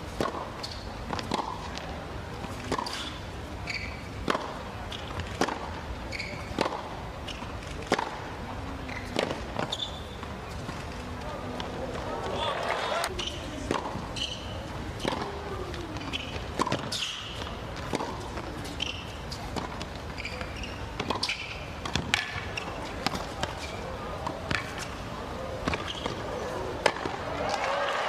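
Tennis balls struck back and forth by rackets in a rally: sharp pops about every one to one and a half seconds, some of them ball bounces on the hard court, with voices murmuring in the background.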